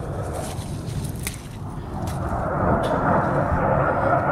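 Fighter jet flying overhead: a low rumble with a rushing noise that grows steadily louder from about halfway through.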